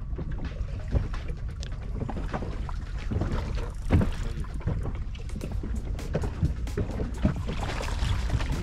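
Water lapping and slapping against the tubes of a small inflatable boat, with wind rumbling on the microphone and scattered knocks on the hull, the loudest about halfway through.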